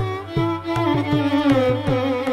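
Carnatic violin playing a sustained melodic line with wavering gamaka ornaments, accompanied by steady hand-drum strokes.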